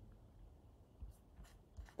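Near silence: quiet room tone, with a few faint short clicks in the second half.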